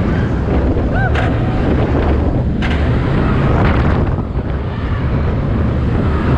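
Wind rushing over the microphone and the rumble of the train's wheels on the steel track of a Rocky Mountain Construction hybrid roller coaster, recorded from the front seat, with a few sharp clacks.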